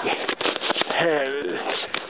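Voices talking, not caught as words, with a few sharp clicks.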